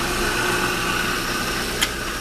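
Countertop food processor motor running steadily, its blade grinding peanuts into peanut butter. A single sharp click near the end.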